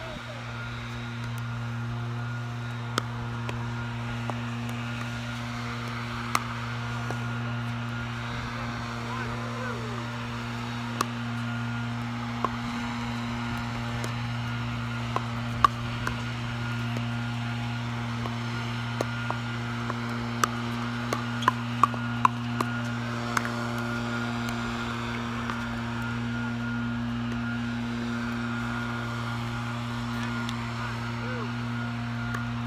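Pickleball paddles hitting a hard plastic pickleball in sharp pops, at first single and spaced out, then a quick run of exchanges about twenty seconds in. Under them runs a steady low mechanical hum.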